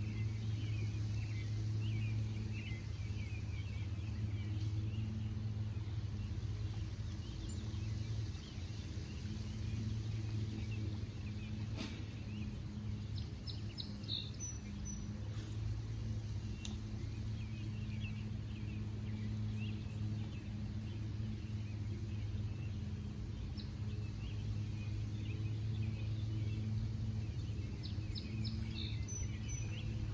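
Outdoor ambience: a steady low mechanical hum throughout, with faint scattered bird chirps, most of them in the first few seconds.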